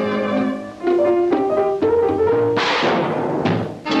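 Orchestral cartoon score with brass and timpani: held brass notes, then a phrase climbing step by step, broken by a noisy crash about two and a half seconds in.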